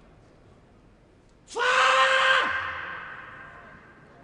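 A single loud shout in a steady high pitch, starting about a second and a half in and lasting about a second, then cutting off and echoing away in a large hall.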